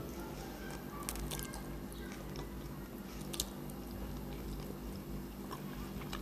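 Faint chewing and mouth sounds of a person eating spaghetti, with a few small sharp clicks scattered through, over a low steady hum.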